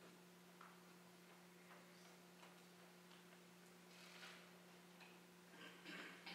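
Near silence: a steady low hum of room tone, with a few faint scattered clicks and soft rustles, and no piano playing yet.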